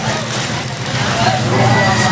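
A motor vehicle engine running steadily at low revs, a continuous low hum, with voices in the background.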